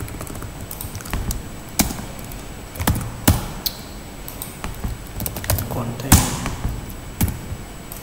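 Computer keyboard typing: irregular single keystrokes with short pauses between them, the loudest about six seconds in.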